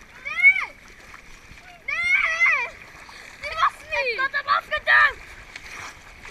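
Children's high-pitched shouts and squeals in three bursts, about half a second, two seconds and four seconds in, over steady splashing of pool water.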